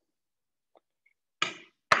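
Chef's knife chopping down on a plastic cutting board while mincing garlic: one sharp knock about one and a half seconds in and another near the end, after a near-silent start.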